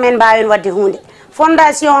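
A person speaking, with a short pause about a second in.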